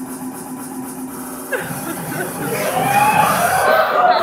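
Voices in a hall over a low steady hum. From about a second and a half in, a louder mix of voices and music starts up, growing toward the end.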